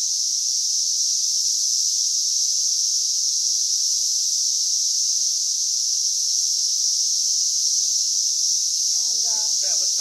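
Chorus of Brood X periodical cicadas (Magicicada), a steady high-pitched drone that holds unbroken throughout.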